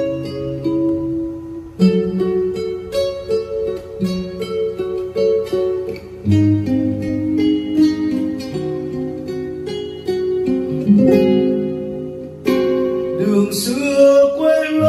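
Solo acoustic guitar played fingerstyle, picking single notes and chords as a song's instrumental introduction. A man's singing voice comes in near the end.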